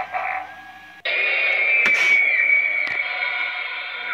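Animated Forest Demon Halloween prop playing its recorded audio through its built-in speaker: the tail of an evil laugh, then, starting abruptly about a second in, a loud steady harsh drone with two sharp clicks in it.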